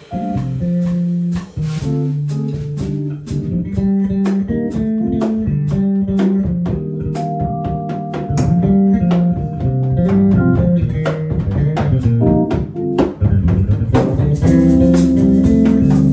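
Small jazz combo playing live: a prominent bass line moving in the low range, with drum kit hits and electric piano chords. The band grows louder about two seconds before the end.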